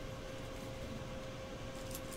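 Quiet, steady room noise with a constant faint hum.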